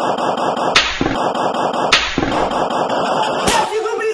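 Gunfire sound effects: rapid automatic fire with two heavy booms about a second apart, ending in a rising whoosh near the end.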